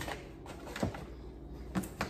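A few light clicks and knocks, spaced irregularly about a second apart, from handling a Ruger 57 pistol and its case during unboxing.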